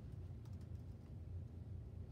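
Faint computer-keyboard typing, a few scattered key clicks, over a steady low hum.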